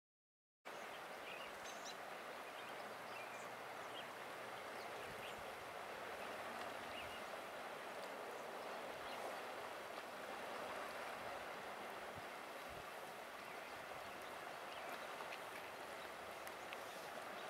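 The Deschutes River flowing, a steady rush of water over rocks, starting about half a second in.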